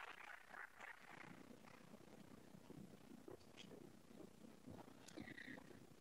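Near silence: faint scattered hand-clapping that dies away within the first second or two, then only quiet room tone.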